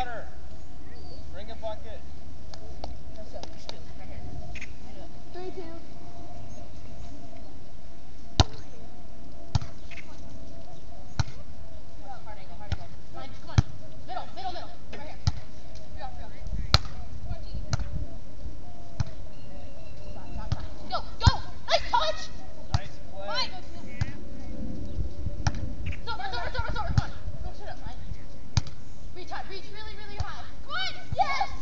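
Beach volleyball rally: sharp slaps of hands and forearms on the ball at uneven intervals, several seconds apart, with players' short calls between hits, over a faint steady hum.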